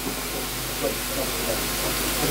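Steady hiss of press-room background noise with faint murmured voices underneath.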